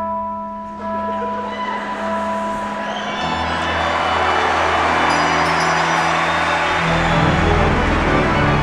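Music: a large pipe organ holding sustained chords, joined by handbells ringing together so that the sound builds into a dense, bright mass. The organ's bass notes grow stronger near the end.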